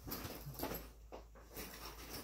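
Rustling and light clicks of tools being handled while reaching for a pair of pliers, with a brief low grunt about half a second in.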